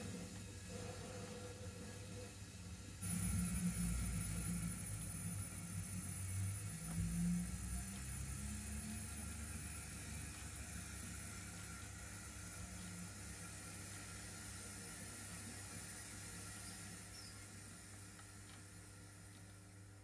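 An 0 gauge model train running on the layout track: a low rumble with a thin high whine starts abruptly about three seconds in, over a steady hum, then fades away towards the end.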